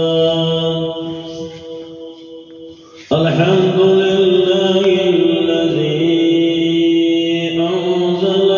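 A man's voice chanting Arabic in long, held melodic notes through a microphone, the sung opening praise of a Friday sermon. The first held note fades away, and about three seconds in a new phrase starts abruptly and runs on with a wavering pitch.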